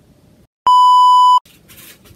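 A single electronic beep, a steady high tone with a buzzy edge lasting under a second and cutting in and out abruptly: a censor-style bleep added in editing.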